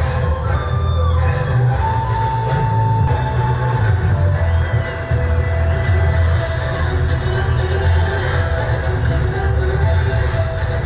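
Music with a heavy, steady bass and long held notes. It changes abruptly about three seconds in.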